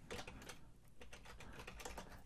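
Faint typing on a computer keyboard: a quick run of keystrokes.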